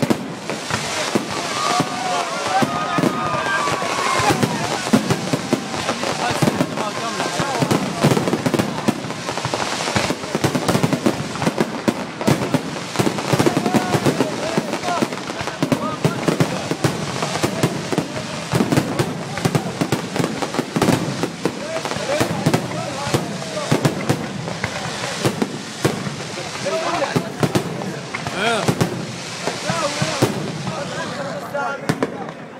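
A fireworks display: a dense, continuous run of bangs and crackles from bursting shells, many overlapping, with no let-up.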